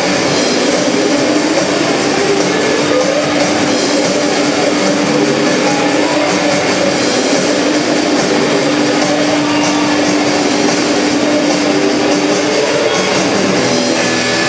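Live shoegaze noise-rock band playing loud, with distorted electric guitars in a dense wall of sound. One low note is held from about two seconds in until near the end.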